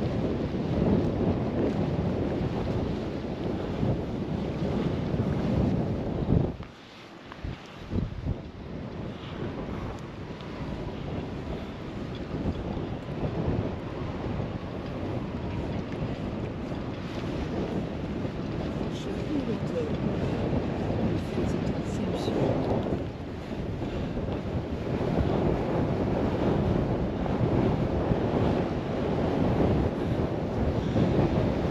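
Wind buffeting the camera microphone, a steady low rumble that drops away briefly about seven seconds in.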